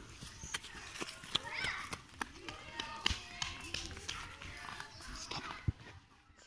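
Faint children's voices with scattered footsteps and short light knocks as the children move off.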